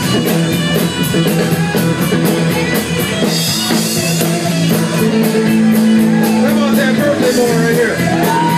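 Live rock band playing an instrumental passage: electric guitar, electric bass and drum kit, with a steady cymbal beat. A long guitar note is held in the second half and bends near the end.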